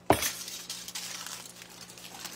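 A sheet of aluminium foil being picked up and handled, crinkling, with a sharp crackle at the start followed by continuous small crackles.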